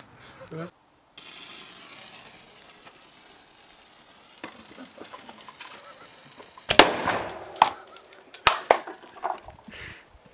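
An air-pressurised plastic Coke bottle shot with an arrow bursts with a loud bang about seven seconds in, followed by a second, sharper crack about a second and a half later.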